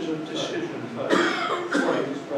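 Indistinct speech in a room, with a cough about a second in.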